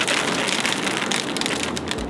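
Rain pattering steadily on hard surfaces: a continuous hiss full of small drop ticks.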